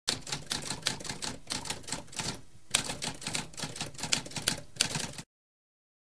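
Typewriter typing: a rapid run of key strikes with a brief pause about halfway through, stopping suddenly about five seconds in.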